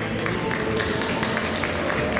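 Audience applauding with scattered, irregular hand claps as the music dies away, a faint held note still under them.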